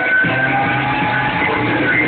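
Rock band playing live on a festival stage, electric guitars over a steady bass line, heard from the crowd.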